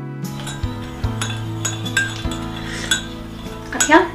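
Teaspoon clinking against a ceramic tea cup as tea is stirred: a string of light clinks, with a louder clatter near the end, over soft background music.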